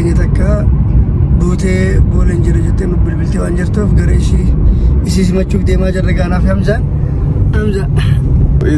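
A man talking inside a car, over the steady low rumble of the cabin.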